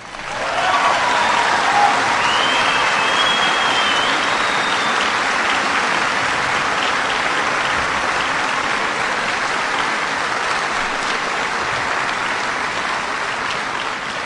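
Audience applauding steadily after an applause line, with a shout and a whistle in the first few seconds; the clapping eases slightly toward the end.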